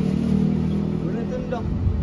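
A motor vehicle's engine running close by, a steady low hum that fades out about one and a half seconds in.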